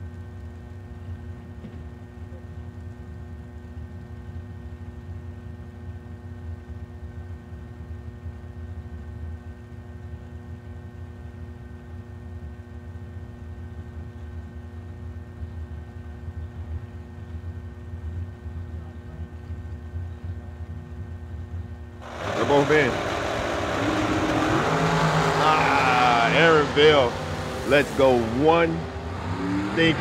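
Two drag-racing dragsters idling with a steady low hum at the starting line, then, about 22 seconds in, a sudden loud burst of engine noise as they launch, the engine pitch swinging up and down as they accelerate down the track.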